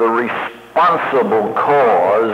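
A man lecturing, his speech pausing briefly just under a second in, on a narrow-band recording with nothing above about 4 kHz.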